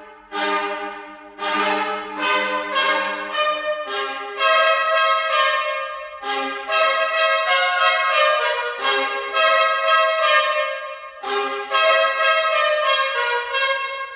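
Sampled pair of trumpets from the Audio Imperia Fluid Brass library playing short, detached notes and chords, in places repeated rapidly. Really bitey and really bright.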